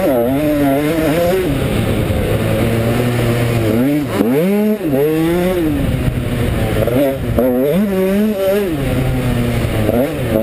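KTM 125 SX's single-cylinder two-stroke engine revving hard as the bike is ridden, its pitch climbing and falling over and over with the throttle and gear changes. About four seconds in it drops away briefly, then climbs sharply again.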